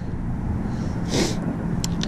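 A steel ice spud bar clicks once against thin shore ice near the end, over a steady low rumble, with a short hiss about a second in.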